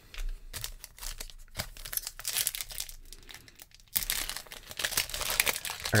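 Foil wrapper of a trading-card pack crinkling as it is handled, a dense crackle that grows louder about four seconds in.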